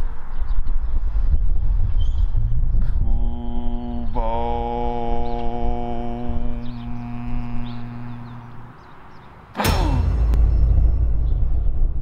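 A man's voice holding a long, steady chanted note, like a meditative "om", over a low rumble of wind on the microphone. Near the end a sudden loud burst with a falling pitch sweep breaks in, followed by more wind rumble.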